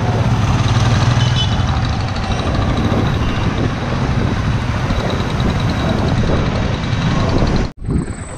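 Busy road traffic from a moving bicycle: trucks, cars and motorbikes running, under a steady rumble of wind on the microphone. The sound breaks off abruptly for a moment near the end.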